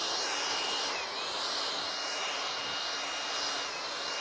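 Cordless electric pollen blower running steadily, its small fan motor giving a high whine over a rush of air as it blows bayberry pollen onto the trees. The pitch dips briefly about a second in and again near the end.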